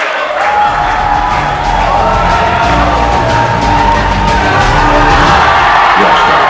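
Background music with a strong bass and held notes, with crowd cheering underneath.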